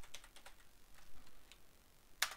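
Faint typing on a computer keyboard: a quick run of keystrokes in the first half second, then a few more spaced out.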